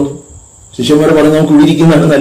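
A man preaching in Malayalam. He starts again after a pause of under a second, and a faint steady high-pitched whine runs under his voice.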